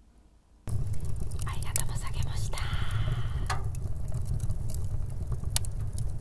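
Wood fire burning in a wood stove: a steady low rumble with sharp crackles and pops, starting abruptly about a second in. A soft whisper-like hiss partway through.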